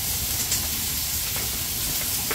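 Pork belly sizzling steadily on a grill pan over a small stove, an even hiss.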